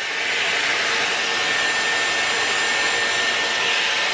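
Dyson Airwrap with its small curling barrel blowing hot air while a section of hair is wound round the barrel: a steady rush of air with a thin, high motor whine.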